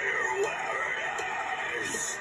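Harsh, strained vocal from a metal singer performing a take into a studio microphone, its pitch wavering up and down.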